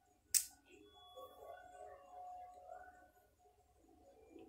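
One sharp click about a third of a second in, then faint, indistinct background sound in a small room.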